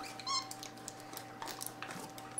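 A capuchin monkey gives one short, high-pitched trilled chirp a quarter second in, followed by faint clicks and rustles of a snack package being handled, over a faint steady hum.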